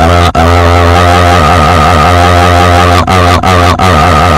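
Very loud, heavily distorted droning sound made of many layered pitches, with a strong low buzz. It cuts out briefly about a third of a second in and again a few times near the end.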